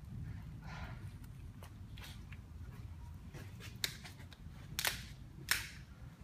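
Plastic pails and containers being handled on a workbench: scattered light clicks and knocks, with three louder sharp knocks in the second half, over a low steady hum.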